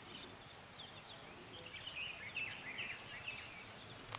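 Small birds chirping faintly, with a busier run of short quick chirps in the middle, over a thin steady high hiss.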